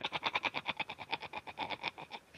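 A man's laugh run through an audio effect: a fast, even train of short vowel-like pulses, about ten a second.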